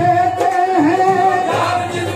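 Qawwali singing: voices holding long, sustained melodic notes over a beat of percussion strokes.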